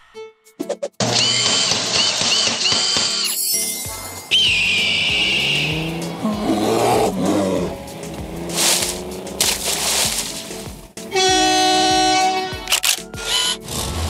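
Channel intro music with sound effects: a run of high chirps, a sweep, gliding low tones and a long held tone near the end.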